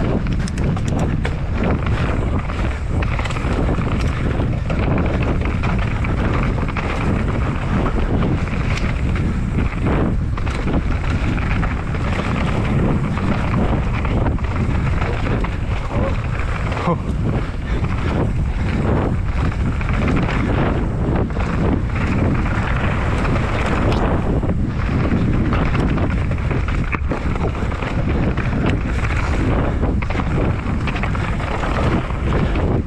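Wind buffeting the microphone of a mountain biker's action camera during a fast descent of a dirt trail, with tyre noise on the dirt and the bike clattering over bumps throughout.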